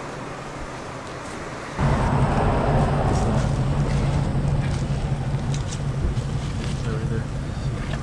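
A steady low rumble starts suddenly about two seconds in and runs on, with the light rustle of a paper takeout box and napkins being handled over it.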